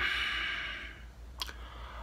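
A man's long exhale, breathing out smoke, that fades away over about a second, followed by a single brief click.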